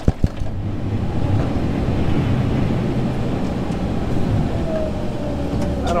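Loader tractor's engine running steadily under load while it pushes snow with the front bucket, heard from inside the closed cab, with a few sharp knocks right at the start.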